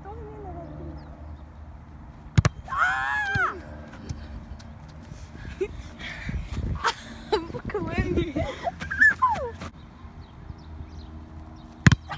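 Boys' high-pitched yelps and laughing shouts, with a sharp thud a couple of seconds in and another at the very end as a soccer ball is kicked.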